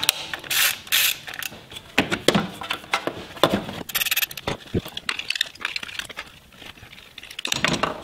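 Hand ratchet and socket clicking as it loosens the small 10 mm bolts holding the ignition coil packs, in runs of quick clicks with short pauses between, quieter near the end.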